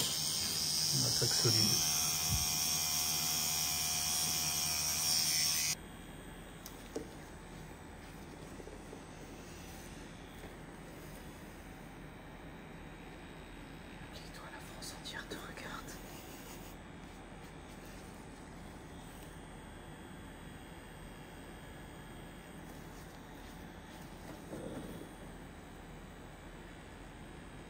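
Electric pen-style tattoo machine buzzing steadily, a bright motor hum, which cuts off abruptly about six seconds in; after that only a faint steady hum remains.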